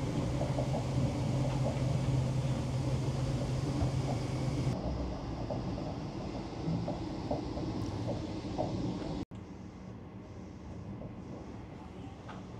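Laos–China Railway high-speed train running, heard from inside the passenger car: a steady rumble with a low hum. The sound changes abruptly about halfway through, then breaks off for an instant about three quarters in and carries on quieter.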